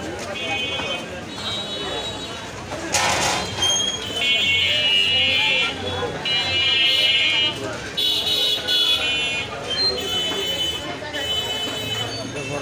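Busy night street: high-pitched electric horns of battery auto-rickshaws beep again and again in bursts of about a second, over crowd chatter and traffic. A brief hiss sounds about three seconds in.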